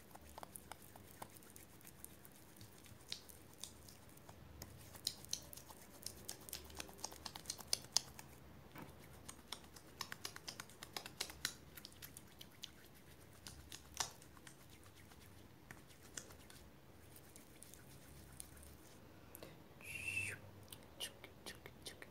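Hands rubbing a sticky styling cream into hair close to the microphone: faint rubbing with many quick crackles and small taps, busiest in the first half or so. A brief mouth sound comes near the end.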